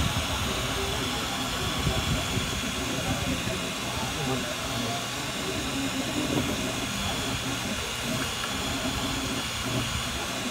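Desktop FDM 3D printer running mid-print: the steady whir and hiss of its cooling fans, with the motors buzzing as the print head moves.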